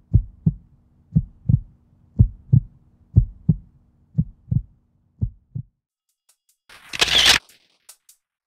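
Heartbeat sound effect: paired lub-dub thumps about once a second over a faint low hum, stopping a little over five seconds in. Then a short, loud whoosh about seven seconds in, followed by faint ticks.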